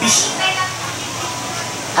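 A short breathy hiss into a handheld microphone, then steady room noise with a faint, distant voice.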